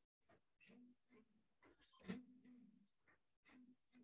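Near silence, with faint, short, scattered noises and one brief, slightly louder voiced sound about two seconds in.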